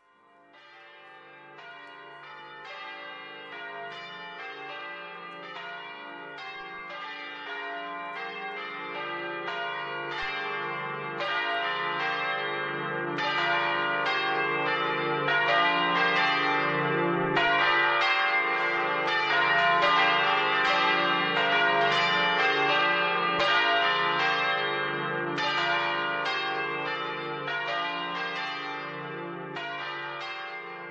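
Bells ringing the call to worship: a continuous run of overlapping, ringing strokes. They swell in gradually over the first dozen seconds or so and ease off slightly near the end.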